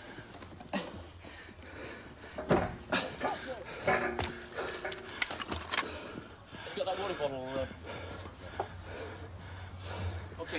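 Indistinct voices, with short calls about 4 seconds in and again near 7 seconds, over scattered knocks and a steady low hum.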